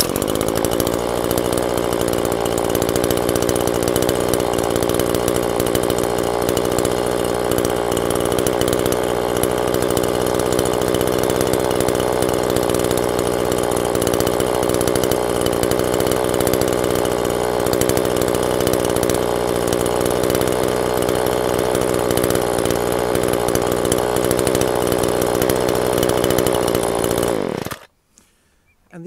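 Homelite string trimmer's small two-stroke engine running steadily at one speed, then winding down and stopping near the end as it is switched off.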